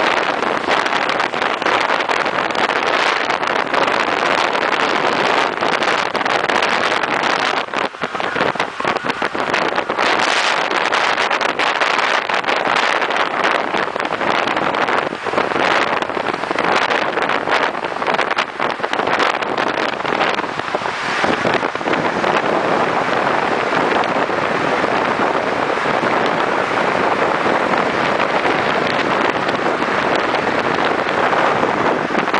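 Steady rush of wind and road noise at a moving car's open window, with the running noise of the car alongside mixed in; no distinct engine note stands out.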